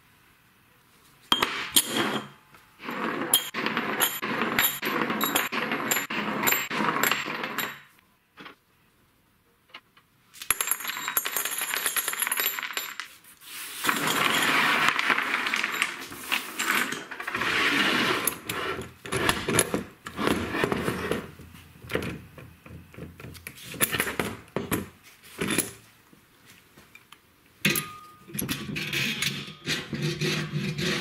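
Steel square tubing being handled and worked on a wooden bench: metal clinks and scraping or rubbing noise in bursts of a few seconds, with a short near-silent gap about eight seconds in.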